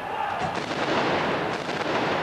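Royal Navy field guns firing their rounds at the end of a competition run. Sharp reports come about half a second in, followed by a dense wash of noise.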